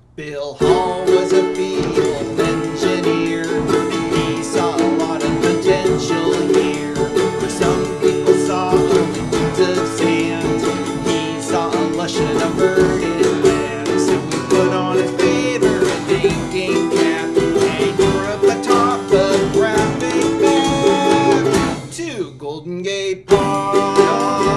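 A small acoustic band playing a song: acoustic guitar and ukuleles strumming over a drum kit. The music drops away for about a second near the end, then comes back in.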